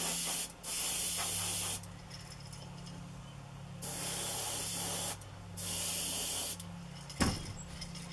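Airbrush spraying paint in four short hissing bursts of about a second each, with a two-second pause after the second. A low steady hum runs underneath, and a short knock sounds near the end.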